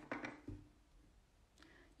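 Near silence: room tone, with a couple of faint brief clicks in the first half second.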